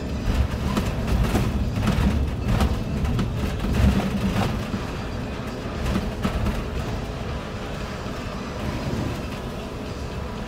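City bus driving on a rough, potholed road, heard from inside: a steady low rumble of engine and tyres, with clusters of knocks and rattles from the body over the bumps, most in the first few seconds and again about six seconds in.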